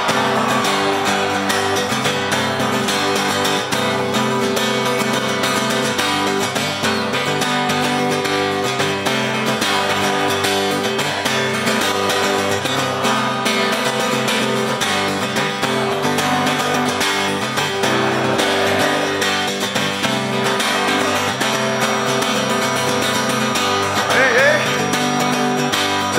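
Music led by a strummed acoustic guitar, playing steadily.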